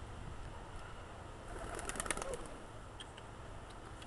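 A bird calling briefly about halfway through, among a short run of clicks, against quiet outdoor background.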